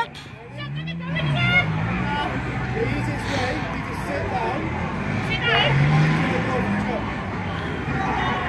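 Indistinct voices of people talking, with background chatter over a steady outdoor hum; no clear words.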